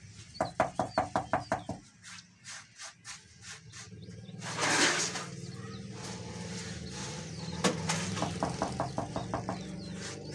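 Wet concrete in a tuff tile mould being patted and dabbed by hand and brush: two quick runs of wet taps, about seven a second, with a louder rushing scrape about halfway. A steady low hum runs underneath.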